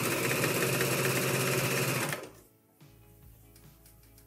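Janome AirThread 2000D serger running at a steady speed, stitching a three-thread overlock seam, then stopping abruptly about halfway through.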